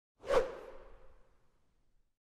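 Whoosh sound effect for an animated logo intro: a quick swoosh about a quarter second in, leaving a ringing tone that fades away over about a second.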